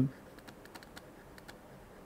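Faint, irregular ticking of a stylus tapping and sliding on a tablet screen as a word is handwritten.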